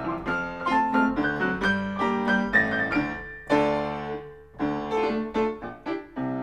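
Solo piano playing the interlude between verses of a Victorian comic song: a brisk run of melody notes over chords, with one loud chord a little past halfway that rings on for about a second before the playing picks up again.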